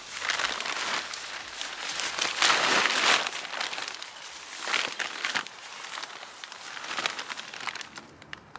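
Tent fabric rustling and crinkling in irregular bursts as a thin fiberglass tent pole is forced through its sleeve, with a few sharp clicks; loudest about two and a half to three seconds in.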